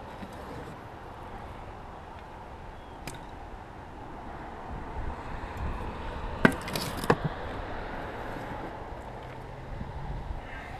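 Metal spade scooping composted manure from a wheelbarrow and tipping it into a planting hole: a few short scrapes and knocks, the loudest about six and a half and seven seconds in, over a steady outdoor hiss.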